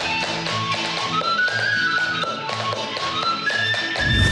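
Lively folk dance tune with a high melody line over a regular bass beat, with sharp taps in time that fit a dancer's shoes and stick on a wooden floor.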